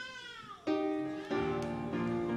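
A keyboard instrument starts playing sustained chords: one comes in about two-thirds of a second in, and another about a second after that. Before the chords, a short high-pitched sound slides down in pitch and fades away.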